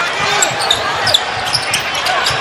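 A basketball being dribbled on a hardwood court over steady arena crowd noise, with a few short high squeaks scattered through.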